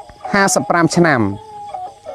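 A rooster crowing once: a call in a few quick parts that ends in a long falling note.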